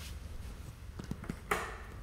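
Wall light switches being flipped: a few faint clicks about a second in, then a sharper click about a second and a half in, over a low steady room hum.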